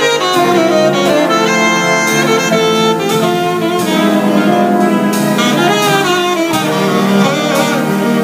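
Jazz big band playing live, a saxophone solo line standing out over the band and rhythm section, with steady cymbal strokes from the drum kit.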